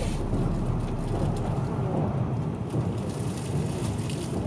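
Steady rushing noise with a low rumble underneath.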